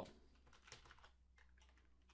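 Faint computer keyboard typing: a short run of keystrokes, a handful of light clicks.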